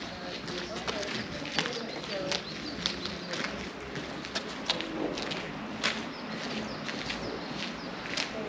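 Footsteps at an unhurried walking pace, with people talking indistinctly in the background.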